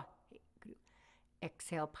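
A woman's soft, whispered chanting of short repeated syllables, trailing off in the first second, then a short breath, and from about a second and a half in she speaks aloud.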